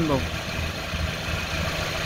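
A 2007 Saturn Ion's four-cylinder engine idling steadily, heard from underneath the car. It is left running so the transmission fluid level can be checked at the check plug.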